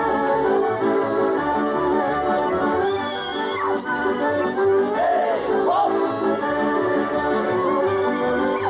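Accordion-led folk dance music from a small live band, playing continuously over a steady, evenly pulsing bass beat.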